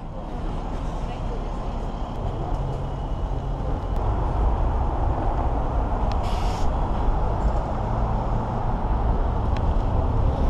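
City street traffic: a steady low rumble of passing cars on a busy boulevard, with a brief hiss about six seconds in.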